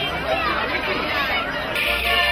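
A crowd of young children chattering and calling out all at once. Near the end it cuts suddenly to accordion music.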